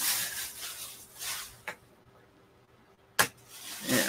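A bag rustling as braiding bobbins (tama) are taken out of it. The rustling goes for about a second and a half, then stops. A sharp knock comes a little after three seconds in, and the rustling starts again near the end.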